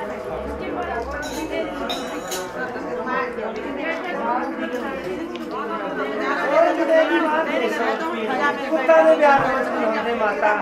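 Several women talking over one another in lively overlapping chatter, with a few short clicks about a second or two in.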